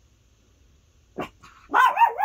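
A short vocal sound a little over a second in, then a louder call that wavers up and down in pitch near the end.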